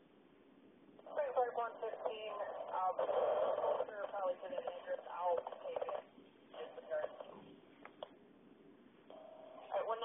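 Two-way radio dispatch voice traffic heard through a scanner, narrow and tinny. One transmission runs from about a second in to about six seconds, followed by shorter bursts.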